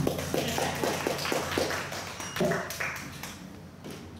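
Brief scattered applause from a small audience at the end of a song, a quick patter of claps that thins out and stops about three and a half seconds in.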